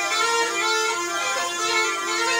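Snake charmer's been (pungi), a gourd-bodied double reed pipe, playing a shifting nasal melody over a steady held drone.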